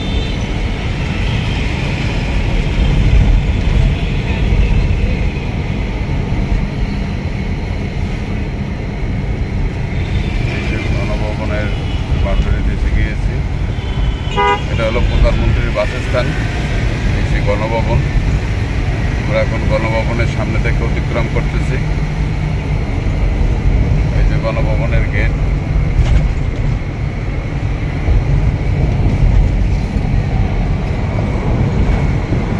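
Steady engine and road rumble inside a moving ambulance's cabin, with short vehicle horn toots from traffic in the middle stretch.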